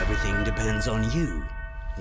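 A voice speaking for about the first second and a half over background music holding a steady chord.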